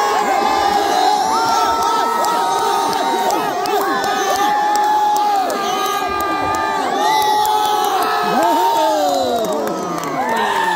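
Crowd shouting and cheering at a tug of war, many voices holding long yells at once. Near the end there is a burst of yells that slide down in pitch.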